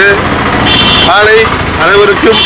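A man speaking Tamil, resuming after a short pause about halfway through. Under the pause there is a steady rumbling background noise, and a brief high steady tone sounds just before the speech resumes.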